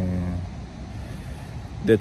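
A man's voice: a drawn-out word trails off in the first half second, then a pause of about a second and a half with only a low background rumble, and speech starts again near the end.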